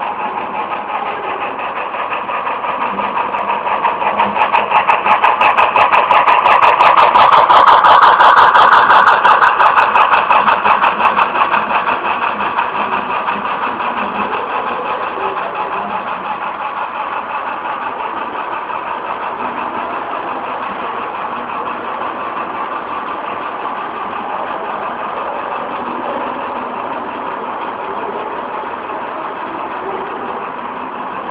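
HO-scale Athearn Genesis Union Pacific Big Boy model playing rapid steam-locomotive chuffing from its SoundTraxx Tsunami sound decoder through its small onboard speaker. The sound swells to its loudest about eight seconds in as the locomotive passes, then slowly fades as it moves away while the model freight cars roll by.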